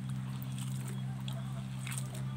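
Faint wet squelching and crackling of soaked cooked rice being squeezed by a gloved hand in a metal pot of water, over a steady low hum.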